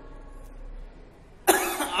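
A short pause with faint room tone, then about one and a half seconds in a man gives a sudden short cough.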